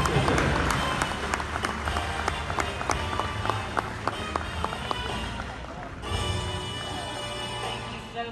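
Audience applause that thins out over about six seconds, followed by music that starts abruptly near the end.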